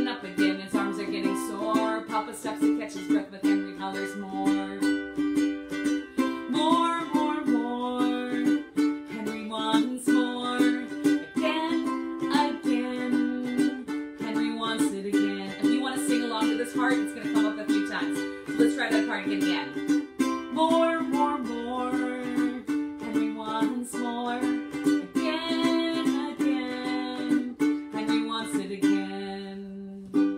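Ukulele strummed in a steady rhythm as the accompaniment to a children's picture-book song.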